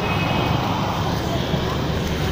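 Steady rumble of street traffic with faint voices in the background.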